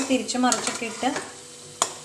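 Green-gram vadas sizzling as they deep-fry in oil, with a perforated metal spatula knocking sharply against the steel wok twice, at the start and near the end. A voice speaks briefly in the first second.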